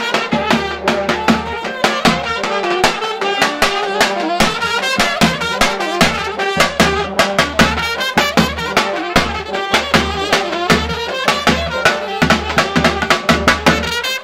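Balkan brass band playing live: trumpets and saxophone carry the melody over a tenor horn, with a large double-headed bass drum beaten with a stick in a steady, driving rhythm.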